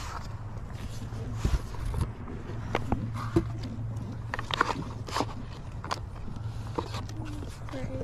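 Baseball cards being flipped through and handled in a cardboard storage box: scattered light clicks, taps and paper rustles over a low steady hum.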